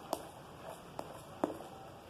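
Green plastic spatula stirring a thick homemade coconut-soap paste in a plastic basin, with three light clicks as it knocks against the basin.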